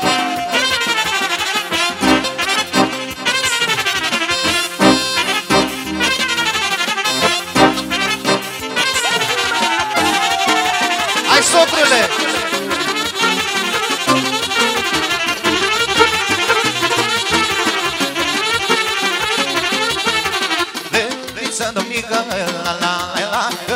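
Live band playing fast instrumental Romanian folk dance music for a hora, loud and continuous, with a brass lead.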